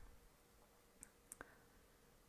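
Near silence: room tone, with three faint short clicks a little after a second in.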